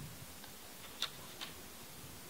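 Quiet hall room tone with two short, sharp clicks about a second in, the first louder.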